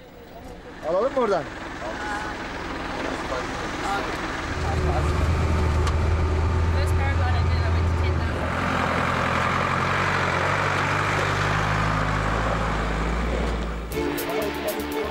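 Off-road truck engine running with a steady low drone, heard from the open back of the truck, with a rushing noise of wind and road joining about eight seconds in. Voices come and go over it.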